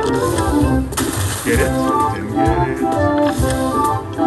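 Video slot machine playing its electronic game music, a melodic jingle over a rhythmic beat, as the reels spin, with a hissing swell about a second in.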